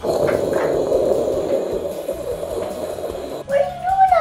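A rough, growl-like animal noise held for about three and a half seconds, then a voice starts speaking near the end.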